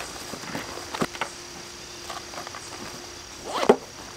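Gear being packed into a fabric stuff sack and its top handled: soft nylon rustling with a few light taps, and a louder short rustle near the end. A steady chirring of insects runs underneath.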